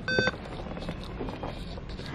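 An in-store price-checker scanner gives one short electronic beep as it reads the barcode on a toy box, then faint store background noise.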